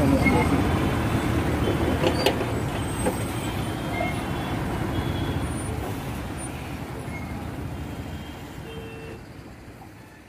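Diesel engine of a 2x2 AC sleeper coach running as the bus rolls slowly past in traffic, amid general road traffic noise; the sound fades away steadily toward the end.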